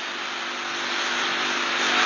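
A steady rushing hiss with a faint low hum under it, slowly growing louder: the recording's background noise, heard bare while the talk pauses.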